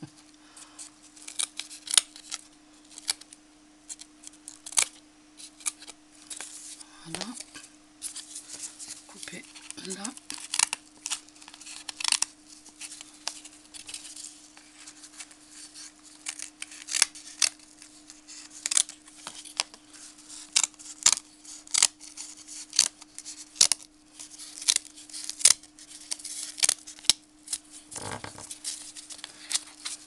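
Small scissors snipping through burlap (jute cloth) glued along the edge of a cardboard frame: a long run of irregular, sharp snips. A steady low hum lies underneath.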